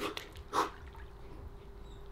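A man's short, forceful breaths as he braces himself in cold pool water, the louder one about half a second in, over a faint steady hum.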